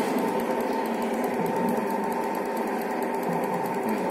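Steady electric motor hum with a faint constant whine, the hydraulic pump of an FIE UTE-100 universal testing machine running.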